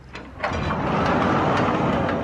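Sliding barn stall door rolling open along its metal track: a steady rattling rumble starting about half a second in.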